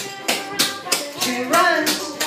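Clogging shoe taps striking a hardwood floor in a quick run of clicks, several a second, over recorded music with a singing voice.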